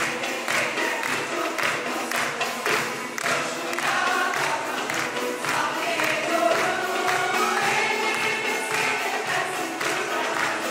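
A choir singing a Turkish art music (Türk sanat müziği) song with an instrumental ensemble accompanying, over a steady percussion beat.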